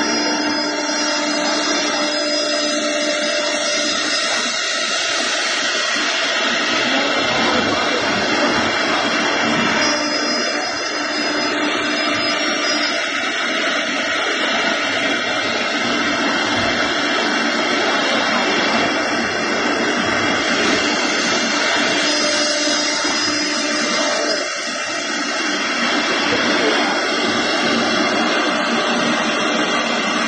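CNC router spindle running at speed and milling a groove in a wooden board: a steady high whine with cutting noise. A few faint extra tones come in for a few seconds about every ten seconds.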